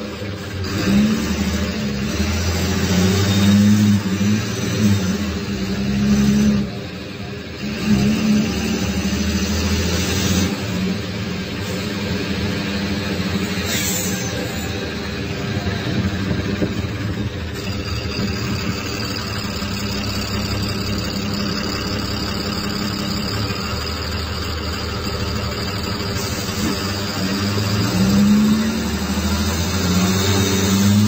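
Cummins ISBe 6.7 six-cylinder turbodiesel of a 2017 Agrale MT17.0 LE city bus, heard from on board. It pulls and eases off for the first several seconds, dips briefly about seven seconds in, runs steadily under load, and pulls harder near the end. A high turbo whine holds steady from about halfway through.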